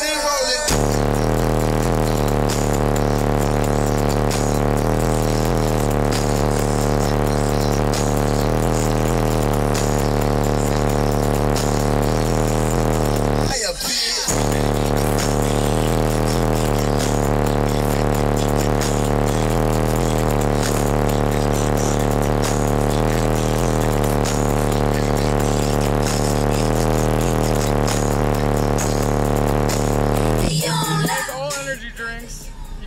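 Loud bass-heavy music with vocals playing over a car's sound system, long low notes held steady under it. It breaks off for a moment about halfway through and starts again.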